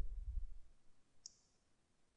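A single computer mouse click a little over a second in, preceded by a brief low rumble at the very start.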